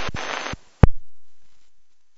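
Airband scanner receiver opening on a transmission with no voice: a burst of radio static hiss that cuts off after about half a second, then another sharp click that fades away over the next second.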